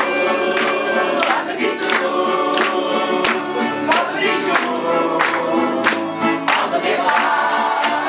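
Acoustic guitar strummed with a man singing, joined by a roomful of people singing along, over a steady beat about every two-thirds of a second.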